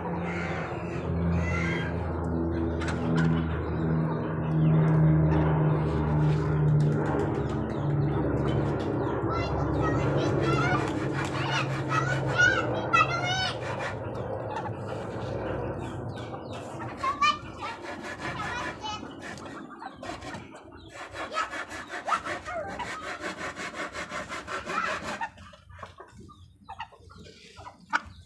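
Poultry yard of Muscovy ducks and chickens, with a few high wavering fowl calls. A steady low mechanical hum runs through the first half and fades out after about sixteen seconds, and scattered sharp taps follow.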